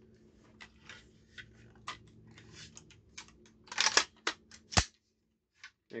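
Clicks, taps and light knocks of a Colt SP-1 AR-15 rifle being handled and turned over in the hands, with a cluster of louder knocks near four seconds in and a single sharp knock shortly after.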